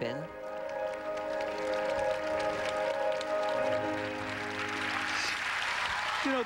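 Figure-skating program music holds a long final chord that ends about halfway through. Arena crowd applause and cheering then rise and swell as the program finishes.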